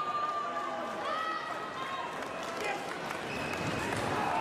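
Indistinct voices calling out over the background noise of a large sports hall with spectators.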